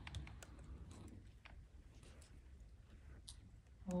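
Quiet auditorium room tone: a low steady rumble with a few faint, scattered small clicks and rustles.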